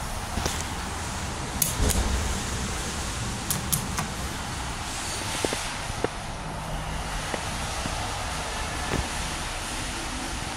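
Steady parking-garage background noise coming in through the open elevator doors, with a few short sharp clicks and knocks scattered through it.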